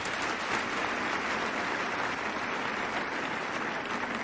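Audience applauding steadily: dense, even clapping from many hands.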